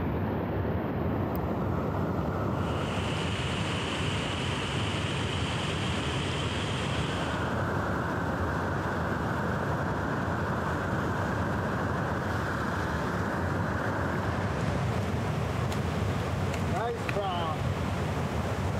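Steady rush of a shallow, rocky stream's running water, its tone shifting abruptly a couple of times. A voice is heard briefly near the end.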